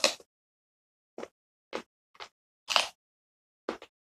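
Close-up crunching of someone chewing raw carrot: a string of about six short, crisp crunches, the loudest at the start and another about three seconds in.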